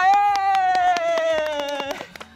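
One long, high-pitched vocal cry held for about two seconds, slowly falling in pitch, with quick hand clapping running under it.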